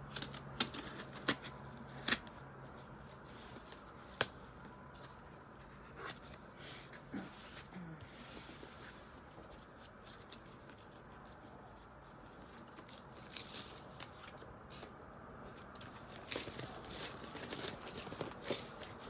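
A cardboard shipping box being opened by hand: scattered sharp clicks and crackles of cardboard and packaging, with a short tearing rustle about eight seconds in and busier handling near the end.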